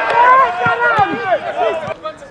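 Football players shouting and calling to one another on the pitch during play, several voices overlapping and loud. A sharp knock comes near the start and another about a second in.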